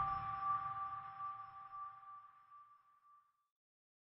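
The closing note of an intro jingle ringing out: a sustained high tone with a fainter lower tone beneath it, fading away over about three seconds.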